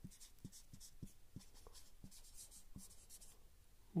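Felt-tip marker writing on a whiteboard: a faint run of short strokes, several a second, as a word is written by hand, stopping a little before the end.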